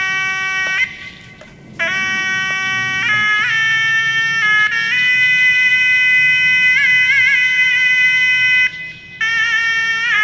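Background music: a single melody line of long held notes with brief wavering ornaments, breaking off twice for a moment.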